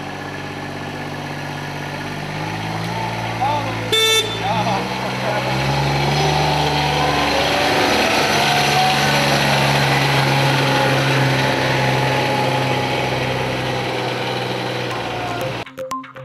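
Engine of a small John Deere Gator utility vehicle running and pulling away, rising in pitch over the first few seconds, then running steadily and growing louder as it drives close by. A short toot of a horn about four seconds in.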